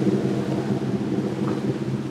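Rigid inflatable boat's engine running at a steady pitch, with a rush of wind and water noise over it.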